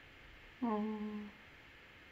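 A person's short closed-mouth hum, "hmm", starting about half a second in. It dips slightly in pitch at the start, then is held steady for about half a second.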